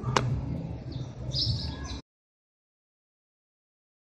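A sharp click and handling noise as the phone camera is moved, with birds chirping and a low steady hum behind. The sound cuts off abruptly to dead silence about two seconds in.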